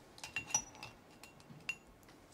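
Quiet, scattered clinks and taps of tableware, several of them with a brief ringing note.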